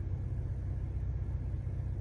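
Steady low rumble inside a car's cabin from the idling engine.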